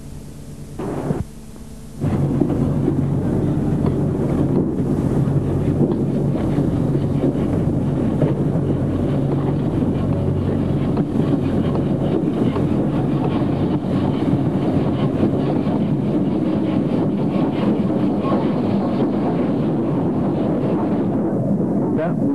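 Steam locomotive running: a loud, steady rumble and hiss that starts suddenly about two seconds in, after a quieter stretch of hum.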